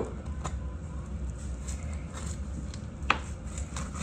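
A knife cutting into a barbecued brisket on a wooden cutting board: faint scrapes and ticks, with one sharp knock of the blade on the board about three seconds in, over a low steady hum.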